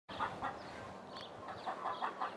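Chicken clucking: a series of short, quiet clucks repeated a few times a second.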